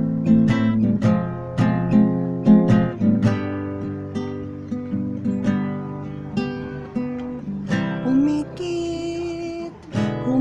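Acoustic guitar strummed in chords, hard for the first few seconds, then softer. Near the end a man's voice comes in, gliding up into one long held sung note.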